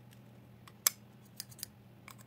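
Small pink plastic Hello Kitty scissors clicking as their plastic blade cap is pulled off: one sharp click a little under a second in, then two lighter clicks.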